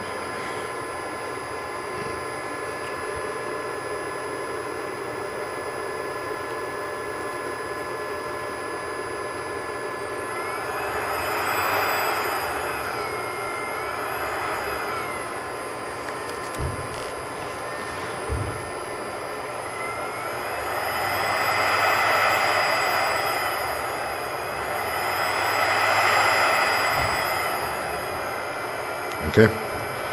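3 kW air-cooled GMT CNC milling spindle, driven by a Fuling inverter, running with a steady whine. Its speed is turned up and back down twice, so the pitch rises and falls in the middle and again in the last third, with a couple of short clicks in between.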